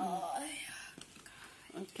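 Quiet speech only: a few soft words at the start, a lull, then a short 'okay' near the end.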